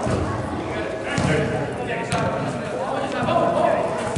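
Indistinct voices of players and spectators carrying through a large, echoing indoor hall, with a few sharp thuds of a soccer ball being kicked on artificial turf.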